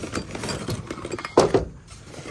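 Tools and metal parts clinking and rattling as a hand rummages through a fabric tool bag, with one louder knock about one and a half seconds in.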